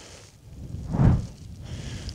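A single heavy breath from the man, one short rush of air that swells and fades about a second in.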